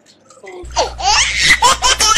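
A short near-quiet gap, then about half a second in a burst of high-pitched laughter begins: rapid repeated pulses, with a steady low hum underneath.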